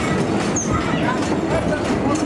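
Bumper cars rolling and rumbling around the ride floor with a clattering, train-like sound, mixed with the voices of riders and onlookers.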